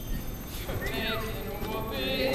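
A woman's voice from the stage, faint, with one long downward vocal slide about a second in.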